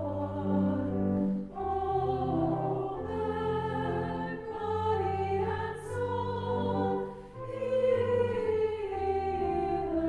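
A small choir singing slowly in long held notes that change from chord to chord, with steady low notes beneath the voices.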